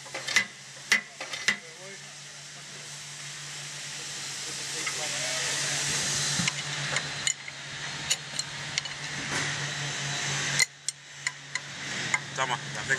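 Light metal clicks and knocks as a power hammer's connecting rod big end and its cap are fitted onto the crankshaft. Under them runs a steady hiss, loudest in the middle, and a low hum.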